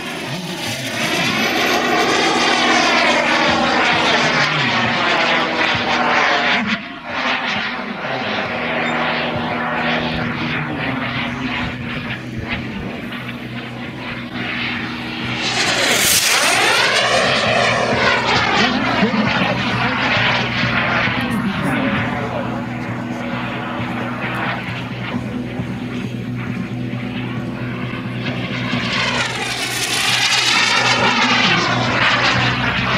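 Radio-controlled model jet's tuned P180 gas turbine running at high power in fast fly-bys, its whine sweeping up and down as it passes, loudest on a pass about halfway through and again near the end. A steady low hum lies underneath.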